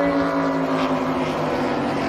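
NASCAR Cup Series Chevrolet Camaro's V8 engine running at low speed on the cool-down lap after the race. Its pitch drifts slowly down as the car slows.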